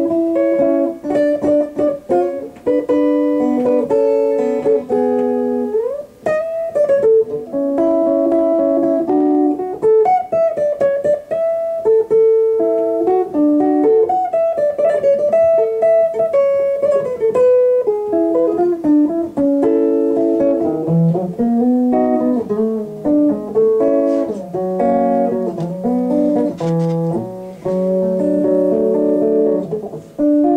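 Instrumental band music: a steel guitar plays a melody with sliding notes, backed by electric guitar, bass guitar and drums.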